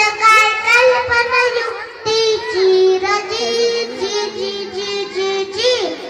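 A young boy singing a Marathi povada (heroic ballad) solo, holding long notes that bend up and down, with a short break about two seconds in.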